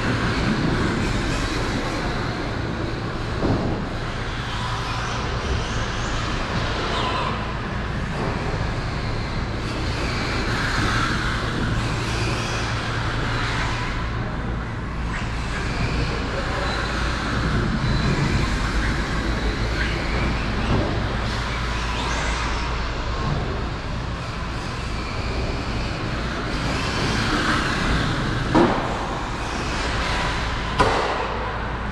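Electric RC car, battery-powered, running laps around an indoor go-kart track: a steady drone of motor and tyre noise over a constant low hum in the hall.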